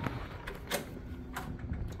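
Hotel room door being pushed open, with two light clicks or knocks, one just under a second in and one about a second and a half in, over a low steady hum.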